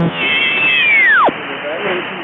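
Shortwave AM reception with a whistling heterodyne tone over the static and faint broadcast voice: a high whistle that holds, then glides steeply down and stops about a second and a half in. It is the beat of a signal sweeping across the band through the tuned frequency.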